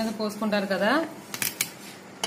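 A person speaking for about the first second, the voice rising in pitch at the end, then a few sharp clicks about a second and a half in.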